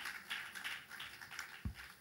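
Scattered congregation applause, faint and thinning out, with a single low bump about one and a half seconds in.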